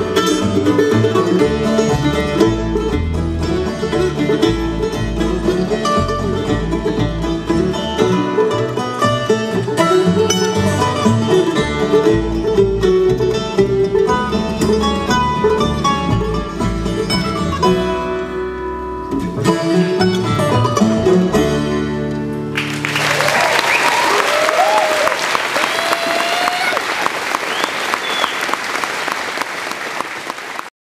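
Live acoustic bluegrass string band playing the last bars of a tune, closing on a held chord a little past twenty seconds in. The audience then breaks into applause with some cheering until the sound cuts off near the end.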